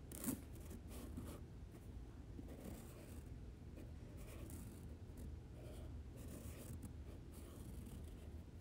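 Faint scratching and rustling handling sounds, with one short sharp knock just after the start.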